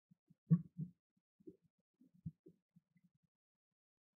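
A string of faint, irregular low thuds and bumps, the loudest about half a second in, with smaller ones around two seconds in.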